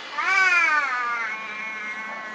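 A woman yawning aloud behind her hand, the yawn sliding up and then down in pitch and drawn out into a long held note; she has just said how sleepy she is.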